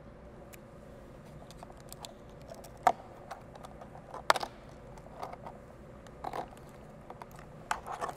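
Thin PET plastic bottle crinkling and clicking as it is handled and a rubber band is tucked through its fins: scattered small clicks and crackles, with two sharp clicks about three and four seconds in.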